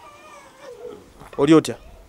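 A baby fussing: faint, high-pitched, wavering whimpers, then a louder short cry about one and a half seconds in.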